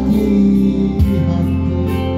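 A Yamaha electronic keyboard plays a song accompaniment: sustained chords over a bass line that shifts to a new note about a second in.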